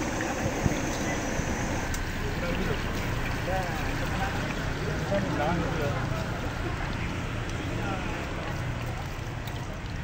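Chicken deep-frying in a wok of hot oil: a steady sizzle over the low rush of the gas burner, with background chatter of voices.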